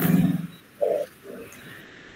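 A person's voice coming through a video call: one short held vocal sound, then two brief vocal sounds about a second and a second and a half in.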